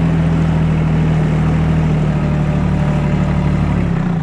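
Solis 26 compact tractor's diesel engine running steadily as the tractor drives, heard from the driver's seat.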